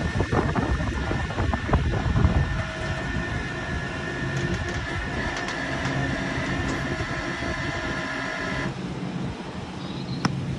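Flatbed tow truck's winch running with a steady high whine over the truck's engine hum as it drags a van up the tilted bed on a ball joint skate, with heavy rumbling and clanking in the first few seconds; the whine cuts off suddenly near the end.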